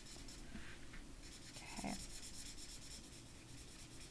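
Stampin' Blends alcohol marker stroked back and forth over cardstock in many short shading strokes, giving a faint, squeaky rubbing.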